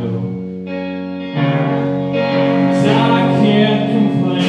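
Live band playing amplified music: electric guitar over drums. A chord is held more quietly at first, then the band comes in fuller and louder about a second in.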